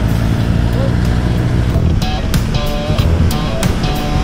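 Yamaha R3's parallel-twin engine running steadily as the bike rides at speed, heard from on board. Background music with sharp hits and short pitched notes comes in about two seconds in.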